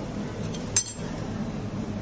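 A metal spoon clinks once against kitchenware about a second in, over a steady low hum.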